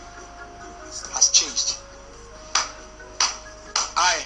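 Film soundtrack of background music with held keyboard-like notes, with short sharp sounds and a man's voice over it.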